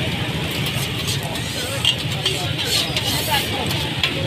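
Busy street-stall ambience: a steady low rumble of traffic and background chatter, over patties sizzling in oil on a flat griddle, with a few light clicks of a utensil.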